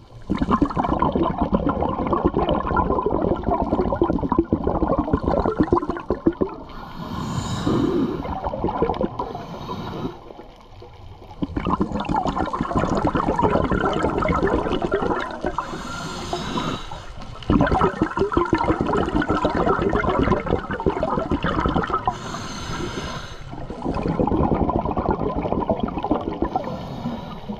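Scuba diver breathing through a regulator, heard underwater: long gurgling rushes of exhaled bubbles, each several seconds long, broken by short hissing inhalations.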